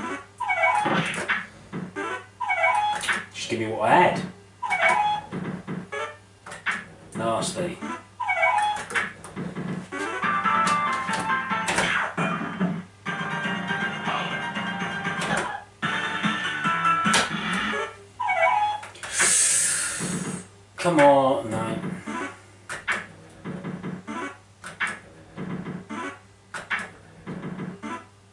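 Golden Dragon fruit machine's electronic sounds during play: synthesized music and jingles with repeated short gliding tones, and a brief hiss about two-thirds of the way through.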